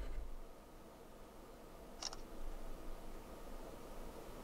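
A single short camera-shutter click from the Samsung Galaxy Z Fold 2's camera app about two seconds in, over quiet room tone.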